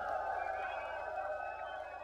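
Tail of a live heavy metal song: the last chord rings out with crowd noise beneath it, fading away steadily.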